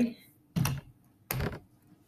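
Two short hissing puffs from a Febreze air-freshener spray, a bit under a second apart.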